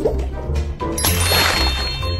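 A bright, ringing chime sound effect strikes about a second in and rings on, over a children's music track with a steady low beat.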